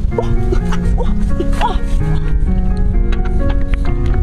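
Background music of steady held notes, with a few short high yips from a dog in the first two seconds.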